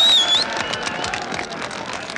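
A huge outdoor crowd of workers cheering their vote for a strike, with one loud, shrill whistle at the start lasting about half a second and rising at its end; the cheering then dies down to a murmur.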